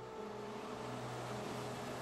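Diesel locomotive running as it draws in: a steady low engine hum with a hiss over it.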